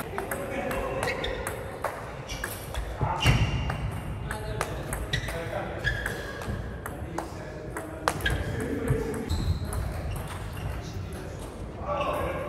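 Table tennis ball clicking off long-pimple paddle rubbers and the table in an irregular backhand rally, with more ball strikes from neighbouring tables in a hall.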